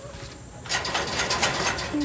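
A dense, rapid clattering rattle that starts suddenly about two-thirds of a second in: metal tongs and a wooden skewer knocking about in a plastic basin as it is lifted.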